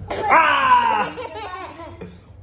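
A toddler's loud belly laugh: one long squeal of laughter falling in pitch over about a second, then trailing off.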